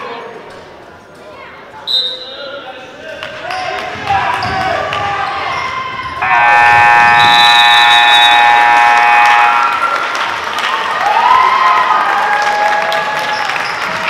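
Gym scoreboard buzzer sounding one steady blast of about three and a half seconds, roughly halfway through; it is the loudest sound, and here it is likely the horn ending the game. Spectators' voices and a basketball bouncing on the hardwood floor run around it.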